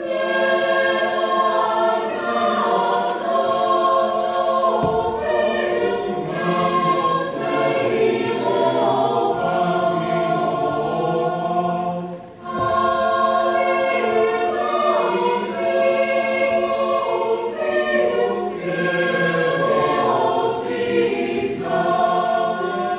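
Mixed choir of men's and women's voices singing in harmony under a conductor. They come in together at once, take a short breath about halfway through, then carry on.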